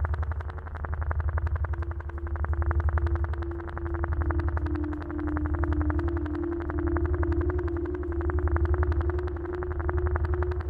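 Electronic synthesizer music: a low synth drone under a fast, even stream of pulses, swelling and dipping every couple of seconds. A held synth tone comes in about two seconds in and shifts between a couple of close pitches.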